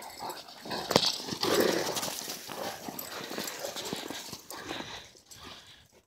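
Close-by dog noises, soft and unpitched, with a sharp click about a second in.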